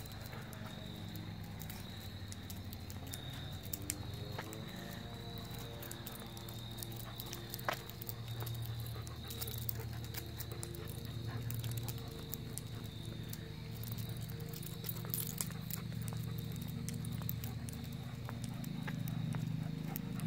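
Outdoor ambience with a steady low hum carrying a few pitched lines, a thin steady high-pitched tone, and scattered light clicks and taps.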